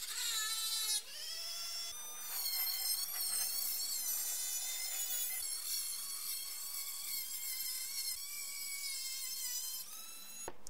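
Dremel rotary tool spinning a diamond cutoff wheel through a carbon-fibre bracket: a high whine that drops in pitch about half a second in, then runs steadily with its pitch wavering as the wheel cuts.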